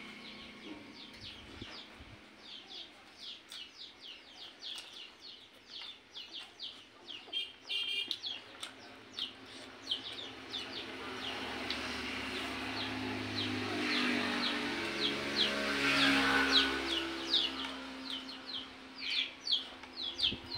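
Small birds chirping in quick, high, short notes, two or three a second. In the second half a low hum rises, peaks, and fades near the end.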